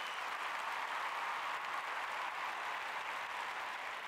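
A large audience applauding steadily, a dense even clapping.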